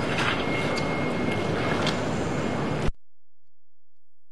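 Loud steady rushing, machine-like noise with a low rumble and a faint thin whine partway through, cutting off abruptly a little before three seconds in.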